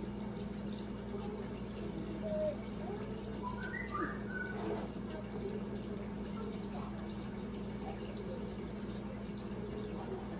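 A steady low electrical hum in a small room, with a few faint small sounds and a faint distant voice partway through.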